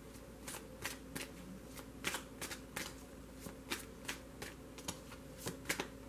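A deck of tarot cards being shuffled by hand: a run of soft, separate card clicks and snaps, irregular, about two or three a second.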